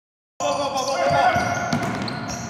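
Dead silence for a moment, then basketball play in a gymnasium: a basketball bouncing on the hardwood floor, with players' voices in the hall.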